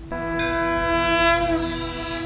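A TV graphics sting: a sustained synthesized chord of many steady tones that swells in just after the start and holds, with a high shimmer joining near the end.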